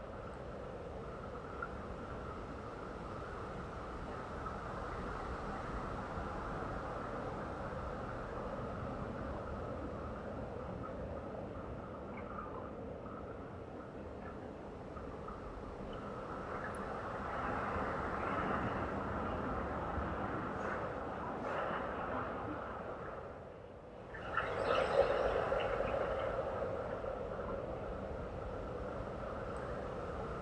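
Jet airliner flying low overhead on approach, its engines making a steady hum that swells as it nears. About 24 seconds in the sound dips briefly and then rises sharply to its loudest.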